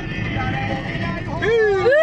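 A person's voice drawing out a sung "weee" as the car rolls through an ETC toll gate, as if mimicking the gate bar lifting. It rises and falls once, then starts again just before the end. Steady car-cabin road noise runs underneath.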